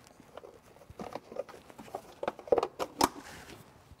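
Plastic fuse box cover in the front compartment of a 2021 Volkswagen ID.4 being handled and fitted back on: scattered light rattles and knocks, with a couple of sharp clicks about two and a half to three seconds in as it snaps into place.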